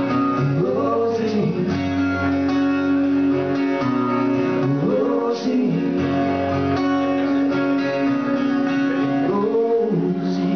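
Two acoustic guitars strummed together in a live duo performance, with a few sung phrases.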